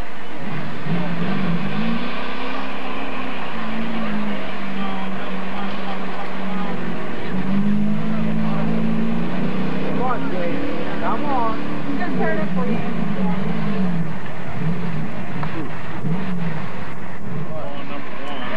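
Lifted GMC pickup's engine revving hard as it drives through a mud pit, its pitch rising and falling again and again.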